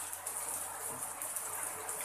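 Heavy rain falling steadily on a corrugated sheet roof and a flooded courtyard, with water streaming off the roof edge: an even, unbroken hiss.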